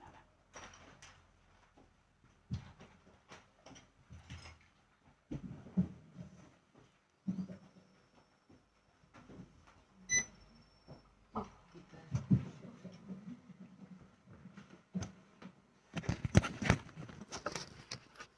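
Scattered knocks, taps and rustles of handling in a small room, with a brief high electronic beep about ten seconds in; the rustling and bumping thicken near the end as the phone recording the stream is moved.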